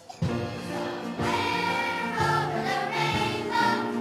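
Choir-concert music starting abruptly just after the start, with held chords that change about once a second.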